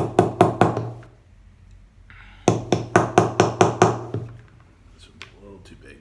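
Light metal-on-metal hammer taps on an Allen key used as a punch, driving at a knurled pin in a paintball marker's receiver: a quick run of about five taps, a pause of over a second, then a run of about eight, around five a second. A few faint clicks follow near the end. The pin is being struck from its knurled side and holds.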